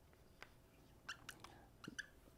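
Faint, short squeaks and taps of a marker writing letters on a whiteboard, in a few small clusters.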